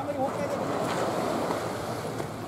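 Steady rushing of wind and sea along a pier, with a voice briefly at the start.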